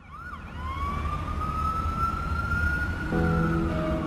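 A siren-like wailing tone over a low rumble. It gives a few quick rising-and-falling whoops, then holds one long tone that climbs slowly in pitch. Music with sustained chords comes in about three seconds in.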